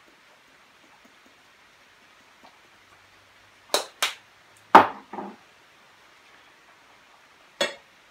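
Objects handled on a wooden bar top, a cinnamon shaker set down and a margarita glass picked up: two light clicks a little before halfway, the loudest knock about a second later with a smaller one after it, and one more click near the end. Otherwise quiet room tone.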